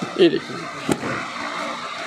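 Cloth garment rustling as it is handled and unfolded, with a short spoken word at the start and a single sharp click about a second in.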